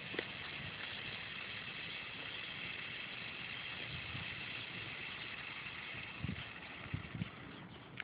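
Steady outdoor background hiss, with a few soft low thumps near the end.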